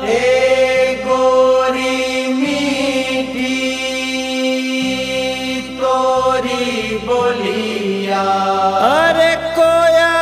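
Music from a Bhojpuri chaita folk song, a passage without lyrics: a melody of long held notes that slide from one pitch to the next, over a steady low accompaniment.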